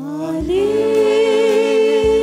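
Church singing begins over a steady instrumental accompaniment: the voice glides up in the first half second, then holds a long note with vibrato.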